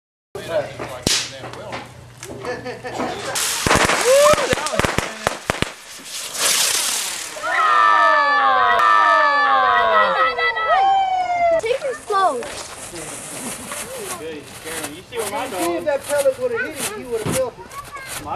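Consumer fireworks going off. A rapid run of sharp crackling pops comes a few seconds in, then a brief hiss. Through the middle, several overlapping whistles glide mostly downward in pitch, followed by scattered pops.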